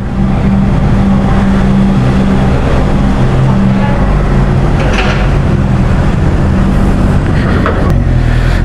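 Honda CB650R's inline-four engine running steadily at low revs while the bike rolls slowly, with wind and road noise over the microphone and a brief burst of noise about five seconds in.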